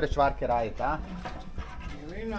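A person's voice laughing and talking in short broken bursts, loudest in the first second.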